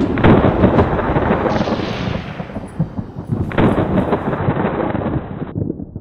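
Thunder sound effect: a loud, rolling rumble of thunder, with a fresh clap about three and a half seconds in.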